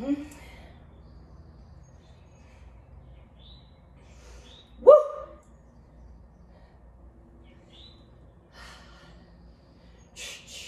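A woman breathing through a set of overhead barbell presses, with a short "hmm" at the start and one loud, short voiced sound rising in pitch about five seconds in.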